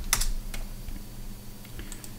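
A few separate computer keyboard keystrokes, the loudest just after the start, as a name is typed and entered.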